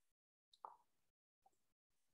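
Near silence, broken once by a brief faint sound a little over half a second in.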